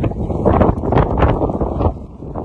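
Loud wind noise buffeting the microphone, a dense low rush.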